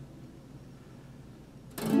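Acoustic guitar: a chord fading away, then a new chord strummed sharply near the end.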